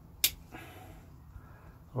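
A single sharp click about a quarter second in, as the blade of a slip-joint folding knife snaps shut, followed by faint handling noise from gloved hands.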